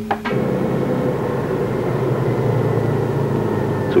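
Car engine running steadily while driving, heard from inside a Volkswagen Beetle; it comes in a moment after the start.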